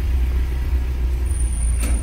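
Steady low rumble of a car's engine and road noise heard inside the cabin while the car creeps in heavy stop-and-go traffic, with a single short click near the end.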